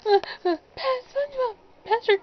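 A high-pitched put-on character voice making a quick run of short, wordless cries that rise and fall in pitch.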